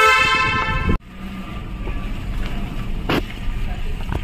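A vehicle horn sounds loud and steady for about a second, then cuts off abruptly. After it comes the low, steady rumble of a car driving, heard from inside the cabin, with one short knock about three seconds in.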